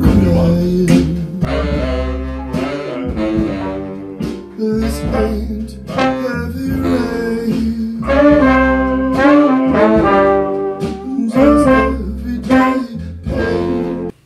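A horn section of trumpet, tenor and baritone saxophones and trombone playing an arrangement together, in phrases of changing notes.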